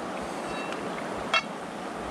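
Steady rush of flowing river water, with one brief sharp knock about two-thirds of the way through.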